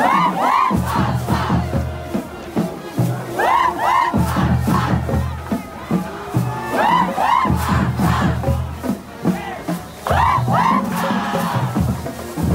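Drill team yelling a cheer in unison: the same pair of rising-and-falling shouts comes back about every three and a half seconds, over a low, steady drum beat.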